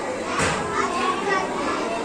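Background chatter of a group of children talking over one another, with a short knock about half a second in.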